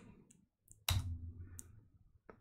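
A few faint computer keyboard clicks, with one sharper keystroke about a second in.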